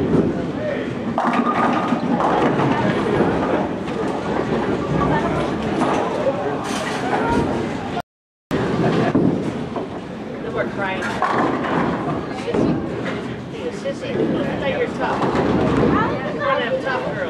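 Bowling alley ambience: steady crowd chatter with a bowling ball striking the pins about a second in and scattered knocks of balls and pins. The sound cuts out completely for half a second about halfway through.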